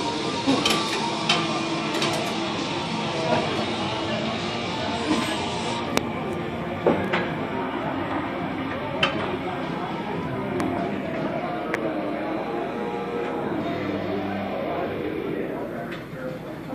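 Background music and indistinct voices in a gym, with scattered sharp clanks of metal weights.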